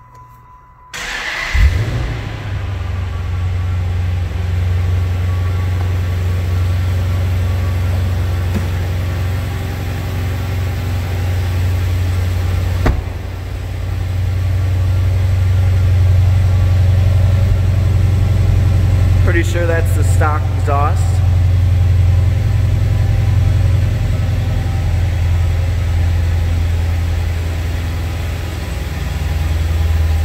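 The 6.4-litre 392 Hemi V8 of a 2011 Dodge Challenger SRT8 starts about a second in with a brief rev, then settles into a steady, deep idle.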